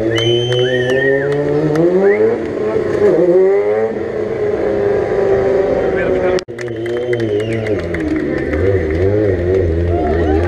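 Stunt motorcycle engine revving hard, rising in pitch over the first couple of seconds and then held at high revs that waver up and down. The sound drops out for an instant about six and a half seconds in.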